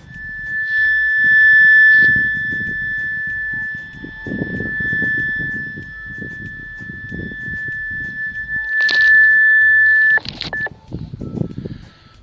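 A loud, steady high-pitched electronic beep tone sent from a Baofeng walkie-talkie through an amplifier and loudspeaker as a wild-boar deterrent. It holds one pitch for about ten seconds, over irregular low rumbling, and cuts off near the end.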